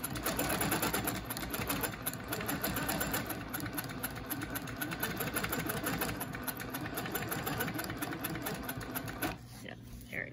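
Quilting machine stitching at a fast, steady rate while free-motion quilting a scalloped line along an acrylic ruler, then stopping about nine seconds in.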